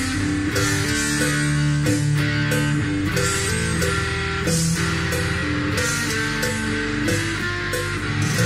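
Electric guitar playing a melodic line of sustained notes, moving to a new note about every half second.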